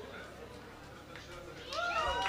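Quiet hall after a song, then from about a second and a half in, audience members start to whoop, with overlapping rising-and-falling cries and the first claps.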